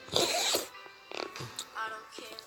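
A short scraping rustle as a hand brushes across the phone during the first half second, then faint background music.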